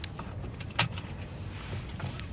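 Steady low rumble inside a car's cabin, with a few sharp clicks, the loudest just under a second in.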